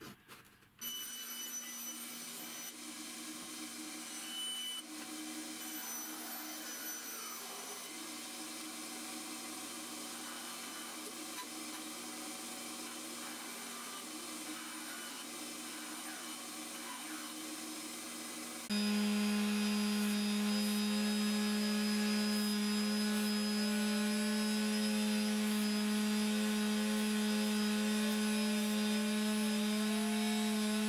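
Benchtop bandsaw running steadily as a small plywood piece is fed through the blade. About two-thirds of the way through it gives way abruptly to an electric orbital sander running louder, with a steady hum.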